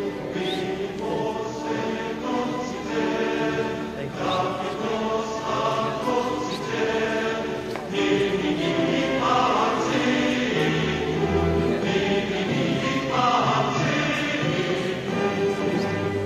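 Choral music: a group of voices singing held chords that change every couple of seconds.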